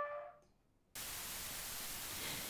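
The last held trumpet note fading away, then a moment of dead silence, then a steady hiss of recording noise from about one second in.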